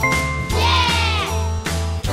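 Cheerful children's game background music with a steady beat, and a brief warbling sound effect about half a second in that answers the correct letter being picked.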